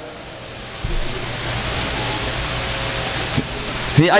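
A steady hiss, with a low rumble coming in beneath it about a second in and holding steady.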